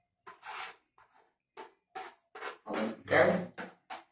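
Spatula scraping and rubbing against a plate in a run of short strokes that grow louder toward the end, the loudest about three seconds in.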